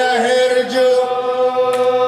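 A man's voice chanting a mournful Arabic elegy for Husayn, holding one long, nearly steady note.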